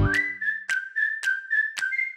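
Intro jingle: a whistled melody hopping between a few high notes over light, evenly spaced clicks, ending on a held note.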